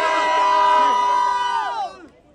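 A group of women cheering and shouting together in long, held high cries, loud and overlapping, which slide down in pitch and stop together near the end.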